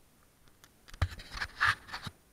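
Contact noise picked up by a handlebar-mounted camera on a mountain bike: a quick cluster of sharp knocks and scraping rustles starting about a second in and lasting about a second, the first knock among the loudest.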